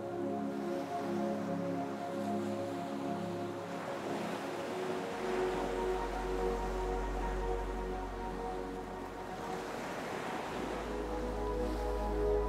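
Ocean waves washing in and out, swelling and ebbing, under soft background music of long held chords that change about five seconds in and again near the end.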